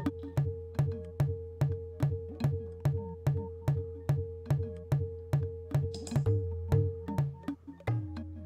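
Empress ZOIA pedal running a two-module granular patch on a looping percussion pattern: sharp, evenly spaced hits about two or three a second over a steady low drone and a sustained mid tone. Near the end the hits thin out and the held tone shifts lower.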